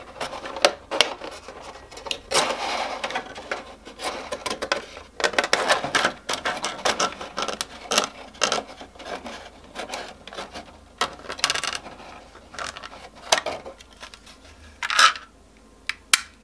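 Utility knife blade cutting through a thin plastic milk bottle, with irregular crackles, clicks and scrapes as the plastic is sawn and flexed by hand.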